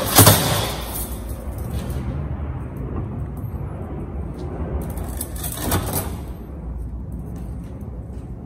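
A coil of bonsai wire being handled and knocked about: a sharp knock just after the start, the loudest sound, and a weaker one near six seconds, over a steady low rumble.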